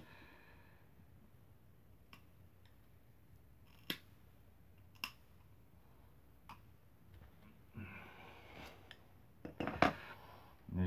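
Hand cutters snipping through frayed nylon rope: a few sharp, separate snips spread over several seconds, the loudest two about a second apart near the middle, with faint rustling of the rope fibres.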